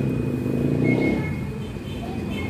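A steady low background rumble at a moderate level, with a faint steady high tone above it.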